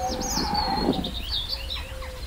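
Birds chirping over a woodland ambience with a steady low hum.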